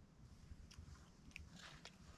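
Faint clicks and scrapes of a spoon in a metal camping pot while eating, a handful of them in the second half, over a low steady rumble.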